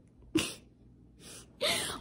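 A single short, sharp burst of breath from a person about half a second in, then a breathy exhale near the end.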